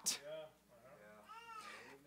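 Two faint, high-pitched calls that each rise and fall, one soon after the start and a higher one past the middle.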